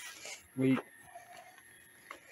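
A faint rubbing noise near the start, then a man says one short word; otherwise quiet.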